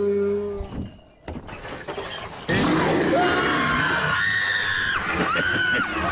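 A brown bear roaring: a loud, rough roar breaks out about two and a half seconds in. From about four seconds, high-pitched screaming from people in the car joins it.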